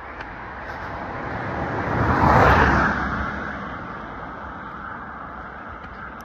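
A car passing by: its road noise swells to a peak a little over two seconds in, then fades away.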